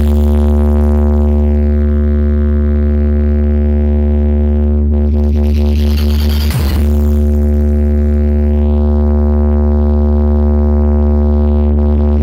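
Loud electronic DJ music played through a large speaker wall: a held synth chord over heavy bass, with a short swooping hit about halfway through.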